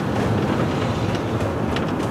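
Volkswagen Westfalia Vanagon driving slowly, heard from inside the cab: a steady low engine and road rumble.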